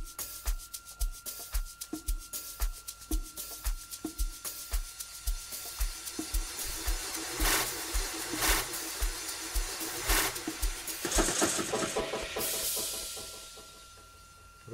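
Amapiano drum programming played back from a computer: a steady low kick about twice a second under shakers and percussion hits. Between about 7 and 11 seconds a drum fill of louder hits comes in, and then the kick stops and a swelling noise fades out near the end.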